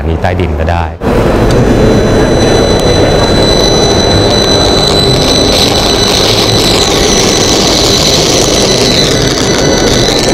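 Electromagnetic fields made audible through a handheld induction receiver: a loud, dense buzzing hiss with steady high whistling tones and a slowly wavering tone above them. It cuts in suddenly about a second in.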